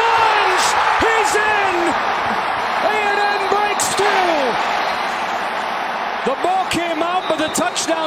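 Large stadium crowd cheering loudly and steadily, with shouts and whoops over the top, as a quarterback's run is ruled a touchdown.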